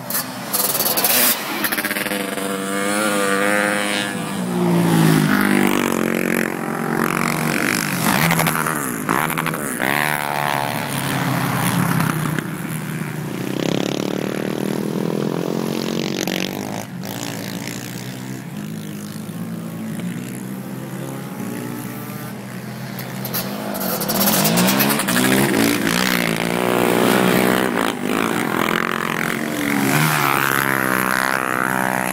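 Racing ATV engines revving hard as quads lap an ice oval. The engine notes rise and fall repeatedly as machines accelerate, shift and pass by, with louder passes near the start, around the middle and toward the end.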